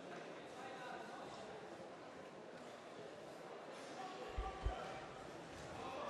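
Faint murmur of a large sports hall with distant voices, and two dull low thumps a little past four seconds in.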